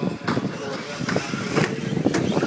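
Radio-controlled off-road cars racing on a dirt track: their motors running, with sharp knocks and clatter now and then.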